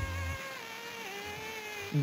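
A woman's singing voice holds one long note that steps down in pitch about a second in, over a low backing note that stops near the start. It is played as an example of audio recorded at a low sample rate, which sounds "rubbish".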